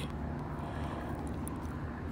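Steady low background rumble and hum, with no sudden sounds.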